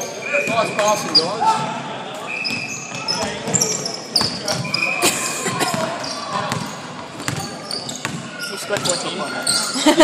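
Basketball bouncing on a hardwood court and sneakers squeaking in short high chirps as players run, with indistinct shouts from players and onlookers in a large indoor hall.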